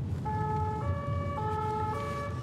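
Two-tone French-style emergency vehicle siren, alternating between a lower and a higher note about every half second, over the low rumble of a car on the road.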